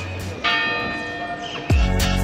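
A bell struck once about half a second in, ringing and slowly fading. Near the end a music track with a heavy bass beat comes in.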